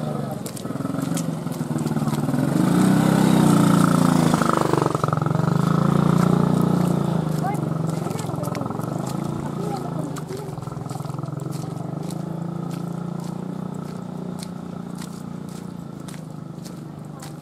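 A motorcycle engine passes close by: it grows louder over the first few seconds, peaks around the middle and then slowly fades away.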